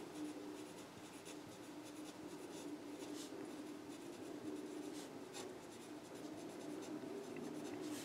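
Pen writing on paper: faint, scattered scratching strokes as words are written out by hand, over a faint steady low hum.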